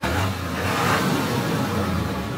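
Animated-outro sound effect of a tractor engine running steadily under music, starting abruptly.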